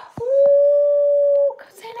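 A dog's single long, steady howl lasting just over a second, with a brief knock just before it.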